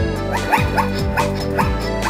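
A zebra barking: a run of about five short, rising yelps in the first half-second to near the end, over steady electronic background music.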